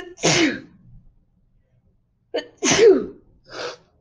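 A woman sneezing twice, about two and a half seconds apart, with a short breathy burst right after the second sneeze.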